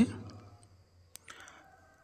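A spoken phrase trails off, then near silence with a single sharp click about a second in.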